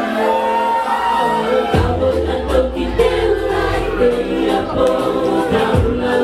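Several women singing a Cook Islands song together in harmony, backed by a live band; a bass line and a steady beat come in about two seconds in.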